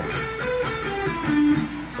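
Charvel electric guitar playing a short pentatonic run of single picked notes, three notes per string, stepping mostly downward and ending on a longer-held lower note.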